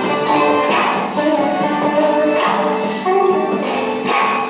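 Live instrumental music: a hurdy-gurdy plays a melody over a steady held drone, joined by electric guitar.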